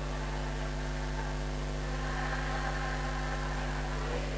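Steady electrical hum and hiss from a public-address sound system between chanted phrases, with no voice on it.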